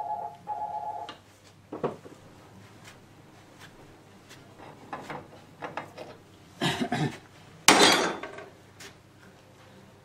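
Metal workshop handling: a brief squeak as the steering box top cover comes off, then scattered metallic knocks and clinks of tools and parts on the bench. The loudest is a clatter with ringing about eight seconds in.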